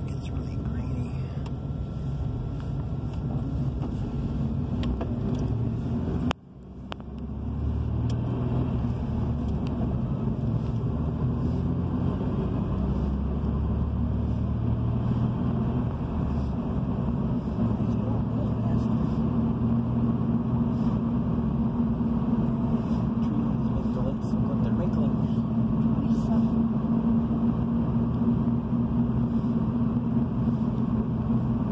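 Engine and road noise of a moving car heard from inside its cabin, a steady low rumble and hum. About six seconds in the sound briefly drops out, then returns.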